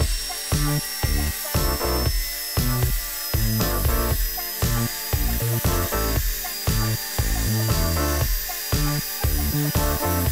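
Angle grinder with a cut-off disc running and cutting through a steel bicycle pedal spindle, a steady high whine that sags slightly in pitch as the disc bites. Background music with a steady beat plays throughout.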